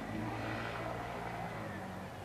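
An engine running steadily at a distance, a low even hum that swells slightly about half a second in.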